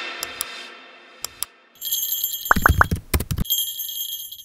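Music fading out, then a few short clicks, then from about two seconds in a bright bell ringing, broken up by several quick swishes: the sound effects of a subscribe-button click and a ringing notification bell.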